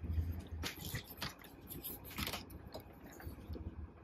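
Hard plastic parts of a Transformers action figure being handled and pushed together during its transformation: a string of faint, irregular clicks and taps as tabs are worked into their slots.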